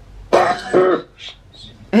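Spirit box output: a harsh, distorted two-syllable voice-like burst about a third of a second in, heard by the investigators as the word "Raptor".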